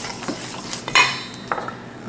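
Metal spoon scraping and clinking against a stainless steel mixing bowl while stirring eggs into a flour mixture, with one sharper ringing clink about a second in.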